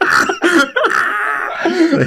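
A man laughing hard: a sudden burst at the start, then a long, breathy, rasping stretch as the laugh runs out of breath.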